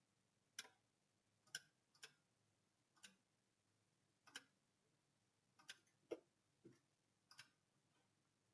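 Faint computer mouse button clicks, about nine short ones at irregular intervals, over near-silent room tone.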